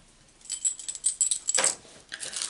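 A quick run of light clicks and rattles from small hard craft embellishments being gathered up and handled, starting about half a second in and stopping shortly before the end.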